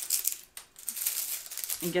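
Brittle, air-dried white sage leaves crackling and rustling as they are stripped by hand from the stems. The leaves are very dry and crispy, and the crackle eases briefly about half a second in.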